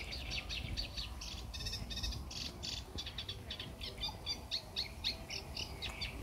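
Small birds chirping and singing in quick, short, high notes, several a second, over a faint low rumble.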